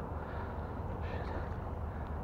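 Steady low wind rumble on the microphone with a faint outdoor background hiss; no distinct event stands out.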